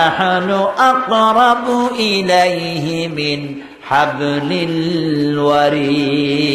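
A man's voice chanting in long, drawn-out melodic notes, in two phrases with a short breath between them a little past halfway: a preacher's sung recitation.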